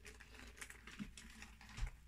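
Faint handling noises: light taps and clicks as gloved hands press and fold resin-soaked fabric over a mold on a newspaper-covered table, with a small knock about a second in and a dull low thump near the end.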